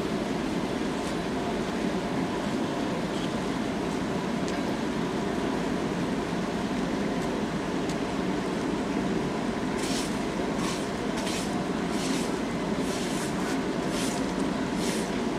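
Steady low rumble of an articulated tram standing at a stop. From about ten seconds in, a run of short, sharp scraping strokes, roughly two a second, comes from track workers working at the rails with hand tools.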